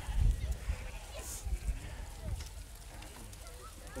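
Icelandic sheep bleating in a crowded sorting pen, among faint voices, with a low rumble that is loudest at the very start.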